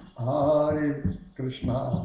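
A man's voice chanting a Hindu devotional mantra in two sung phrases, with a short break between them.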